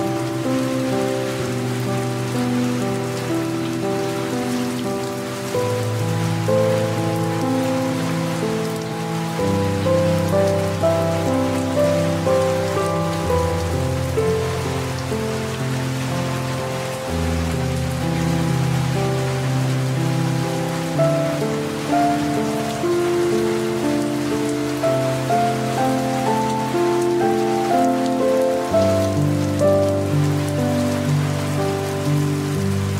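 Soft, slow piano music with long held notes, the bass note changing every few seconds, mixed over a steady hiss of light rain falling.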